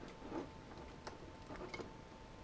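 Quiet room tone with a faint steady whine and a soft click about a second in.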